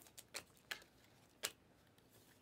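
A stack of trading cards being flipped through by hand, with four faint, uneven clicks of card sliding off card over two seconds. The last click, about one and a half seconds in, is the loudest.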